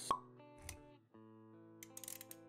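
Intro-animation music with held notes, and a short, sharp pop effect just after the start, followed by a soft low thud about half a second later. The music drops out briefly about a second in, then resumes.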